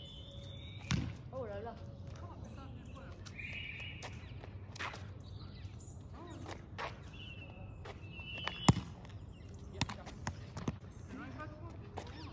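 A ball bouncing on asphalt: several scattered sharp knocks, the loudest about three-quarters through, with birds chirping in between.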